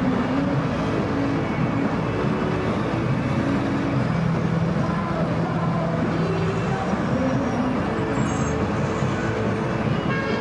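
Steady road-traffic noise: a dense din of car engines, with low engine tones that hold for a few seconds at a time.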